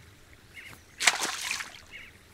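A thrown stone splashing into a pond: one short splash about a second in.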